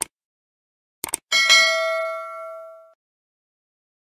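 Subscribe-button animation sound effect: two quick double clicks about a second apart, then a single bright bell ding that rings out for about a second and a half.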